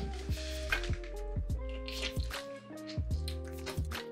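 Wet close-up chewing and slurping of a sauce-soaked braised mushroom, with short squishy mouth clicks, over background music.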